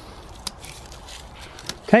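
Dead daffodil flower heads being pulled off their stems by a gloved hand: faint rustling with two short sharp snaps.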